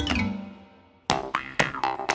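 Children's cartoon music: a falling sound effect slides down and fades out, then after a brief gap a new bouncy tune of short, sharp notes starts about a second in, at about four notes a second.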